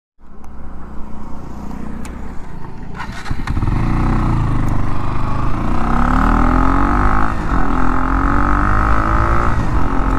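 Motorcycle engine pulling away and accelerating, its pitch climbing through the gears with short breaks at the shifts about seven and a half and nine and a half seconds in. A steady rumble of wind on the mounted camera runs underneath.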